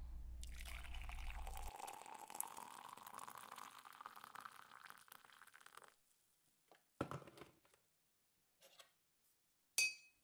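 Coffee being poured into a cup for about six seconds, the pour's pitch rising as the cup fills. Then a short knock, and near the end a sharp ringing clink as the cup is set down.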